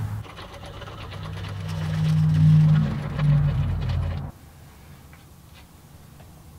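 Old hand-crank drill boring into wood, its gears whirring steadily for about four seconds, then cutting off abruptly.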